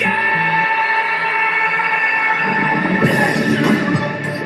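Pop song playing, with one long held high note that fades after about two and a half seconds into a busier, denser passage.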